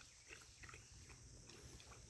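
Faint, irregular lapping and slurping of a dog and a sheep drinking from a water trough, over a steady high insect drone.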